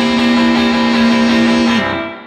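Guitar-led rock band holding the song's final chord, which stops sharply near the end and starts to ring away.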